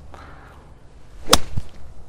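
Golf iron striking a ball off turf: a single sharp crack of impact a little past halfway, followed by a fainter knock.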